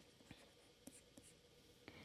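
Near silence with a few faint ticks of a stylus writing on a pen tablet.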